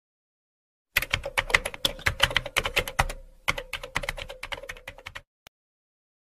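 Computer keyboard typing sound effect: a quick run of key clicks that starts about a second in, pauses briefly about halfway, then types on, with one last click near the end.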